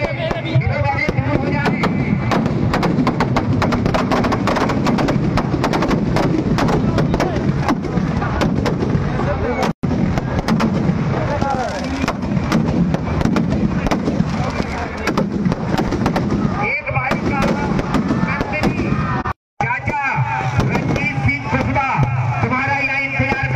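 Firecrackers packed into a burning Ravana effigy going off in a rapid, continuous crackle of sharp bangs. The bangs thin out in the last few seconds as voices come through.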